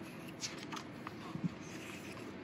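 A page of a paper picture book being turned by hand: a quiet, soft paper rustle with a few faint ticks.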